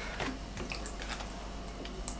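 Half an orange squeezed by hand over a saucepan of sugar and spices: faint squelching with a few small ticks.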